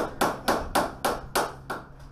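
A quick, evenly spaced series of sharp strikes on a panel of a B-1 bomber's underside, about three to four a second, growing fainter toward the end.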